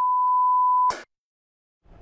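A steady, single-pitched censor bleep lasting just under a second, cut off with a click. It is dubbed over a man's ranting speech.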